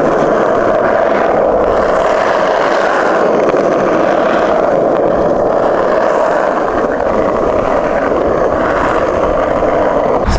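Skateboard wheels rolling over cracked asphalt, a steady rolling noise with no break.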